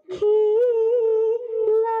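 A singer in Sikh devotional singing holds one long high note with a slight waver, after a brief break and breath at the start.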